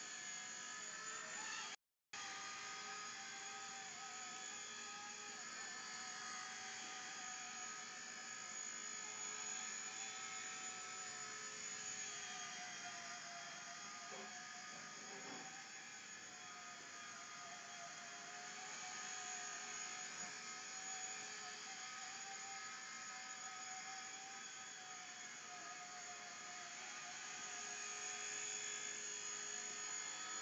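Blade mSR micro RC helicopter hovering, its small electric motors and trimmed carbon fiber rotor blades making a steady whir whose pitch wavers slightly as the throttle is worked. The audio drops out briefly about two seconds in.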